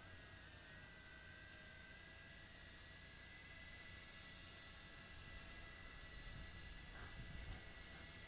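Near silence: a faint steady hiss and low hum with a few thin, steady high tones.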